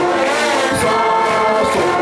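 A wind band of flutes, clarinets, saxophones and brass playing a song, with voices singing over it.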